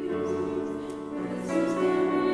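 A hymn sung by a group of voices with grand piano accompaniment, held chords moving to a new chord about halfway through.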